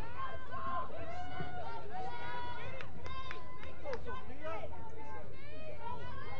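Several voices calling out and shouting across the field at once, with a few sharp clicks around the middle.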